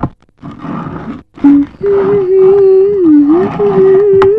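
A person humming a slow tune on long held notes, starting about two seconds in after a short burst of noise.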